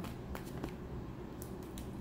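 Tarot cards being handled as a deck is picked up to pull a card: a few light, scattered clicks and taps over a low steady background hum.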